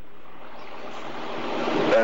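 Rushing hiss on a caller's telephone line, swelling steadily louder through the second half.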